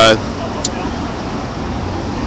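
Steady street traffic noise from passing cars, with a brief faint high chirp about half a second in.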